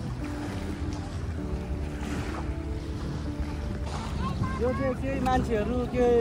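Wind rumbling on the microphone at the sea's edge, with a faint steady hum under it.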